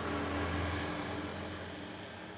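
Low, steady mechanical hum with some hiss, slowly fading away.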